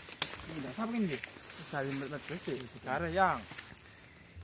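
People's voices talking in short phrases, with one sharp click about a quarter of a second in.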